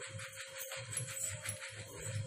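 Plastic sieve shaken and tapped by hand, rattling in a steady rhythm of about three shakes a second as cocoa powder and sugar sift through its mesh into a glass bowl.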